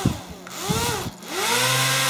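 Small DC electric fan motor on a homemade model hovercraft whirring. It speeds up and slows down twice in quick succession, then spins up and holds a steady pitch. The builder believes its fan blades are mounted backwards.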